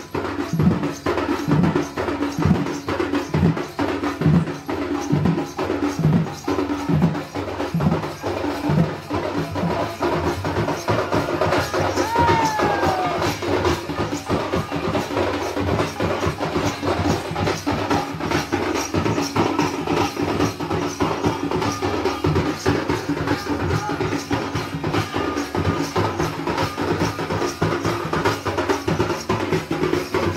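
Traditional drums played fast and dense, with a deep beat about once a second for the first several seconds. A brief falling tone comes about twelve seconds in.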